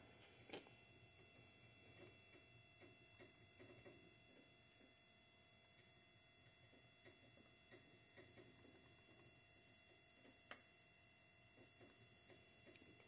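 Near silence: faint room tone with a steady low hum and a couple of small clicks, about half a second in and again near the end.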